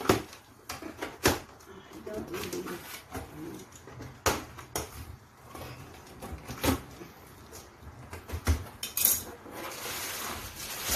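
Cardboard box being opened by hand: flaps and packing paper pulled apart and rustling, with scattered sharp knocks and crackles, the strongest about a second in, around four seconds and near seven seconds, and a short burst of rustling near nine seconds.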